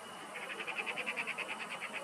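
A small animal's rapid chirping trill, about ten short high pulses a second, starting about a third of a second in, over a faint steady high-pitched drone.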